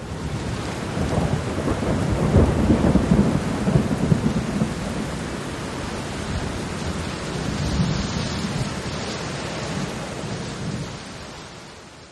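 Steady rain with a low rumble underneath, loudest about two to four seconds in, fading out at the end.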